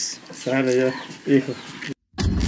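Only speech: a couple of short spoken phrases over faint room sound, cut off abruptly just before the end.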